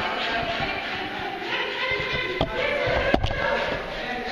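Two sharp knocks, about two and a half and three seconds in, over indistinct voices echoing in a large hall.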